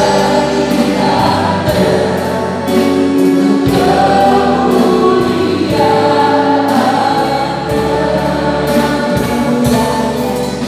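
Mixed vocal quartet of two men and two women singing an Indonesian gospel worship song in harmony through microphones, holding long notes over a sustained bass accompaniment with a steady beat.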